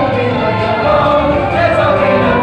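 A stage-musical cast chorus singing together over instrumental accompaniment, at a steady full level.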